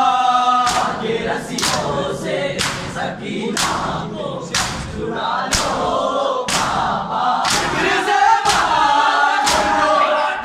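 A large group of men chanting a Muharram noha in unison, with a sharp slap of hands on bare chests (matam) about once a second, all together in rhythm.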